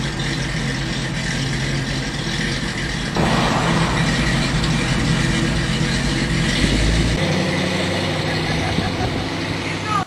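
A 1954 Chevrolet pickup's hand-built pro-street engine runs as the truck drives off, getting louder about three seconds in. The lowest rumble drops away about seven seconds in.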